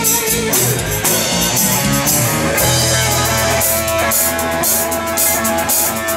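Live rock band playing an instrumental passage: Explorer-style electric guitar over drums and bass. A bending lead note comes early, and a long held guitar note runs through the second half.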